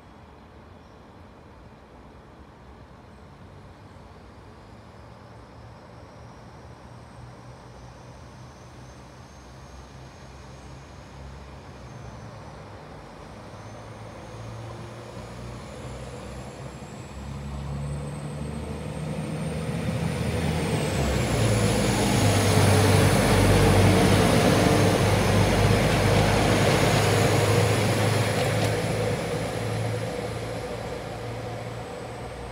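Northern diesel multiple unit passing through the station without stopping: its engine and wheel noise build slowly as it approaches, are loudest about three-quarters of the way in, then begin to fade as it runs away. A faint high whine rises and falls in pitch during the approach.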